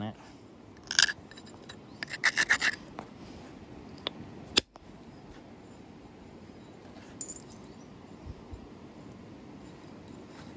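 A few light clicks and taps of a large flint biface, which the knapper takes for Belize flint, being handled against the leather pad and antler tool. They come in short clusters, one about a second in and a quick run a second later, with only faint background between.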